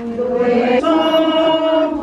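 A group of voices singing a slow religious song together in long held notes, moving up to a new note just before a second in.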